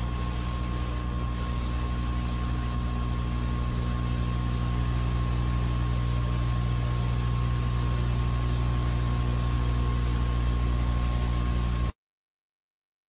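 Steady electrical hum and hiss from an old videotape broadcast recording, with a faint steady high tone, and no commentary. The sound cuts out abruptly to silence just before the end.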